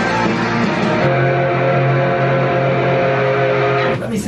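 Rock music with electric guitar; about a second in a new chord starts and is held steady.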